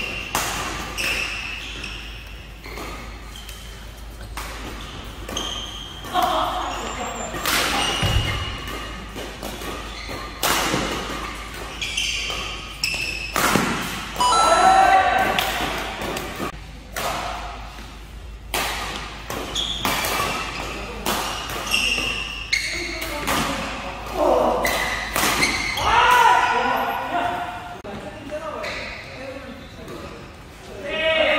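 Badminton rallies in an indoor hall: rackets striking the shuttlecock in sharp, irregular hits, often less than a second apart, with players' voices and shouts in between.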